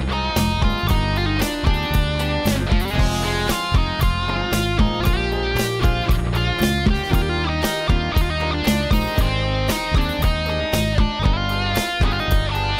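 Instrumental break in an Uzbek pop song: guitars playing a melodic line over keyboard backing and a steady drum beat.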